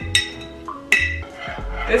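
A metal spoon clinking against a glass mason jar twice, about a second apart, while stirring milk tea. Background music with a low bass pulse plays underneath.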